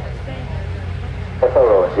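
Launch countdown radio loop: a steady low hum, then about a second and a half in, a man's voice briefly comes over the loop.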